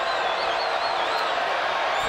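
Basketball arena crowd noise, a steady hubbub, with a high wavering whistle over it in the first second or so.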